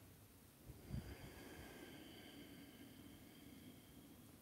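Near silence: room tone, with a soft low thump about a second in as a body shifts its weight on a yoga mat, followed by a faint high ringing tone for a few seconds.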